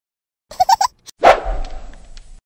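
Cartoon sound effects: a quick run of about four short squeaky blips, then a sudden loud hit that fades away.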